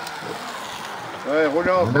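A steady outdoor noise haze with no clear source. About a second and a half in, a man's commentating voice starts.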